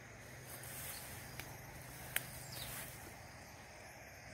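Faint outdoor background noise with a low steady hum, broken by one sharp click about two seconds in.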